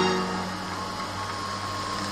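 Background music in a lull between pieces: the sustained notes of a sung passage fade out early on, leaving a soft, quieter stretch.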